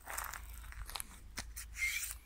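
Footsteps crunching on gravel and dry grass, with a few sharp clicks about a second in and a louder scuff near the end.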